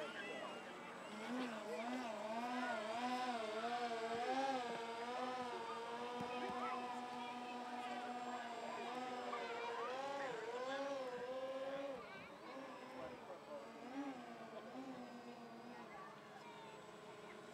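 Electric motor and propeller of a radio-controlled model aircraft buzzing as it flies. The pitch wavers up and down with the throttle, holds steady for a few seconds, then fades after about twelve seconds.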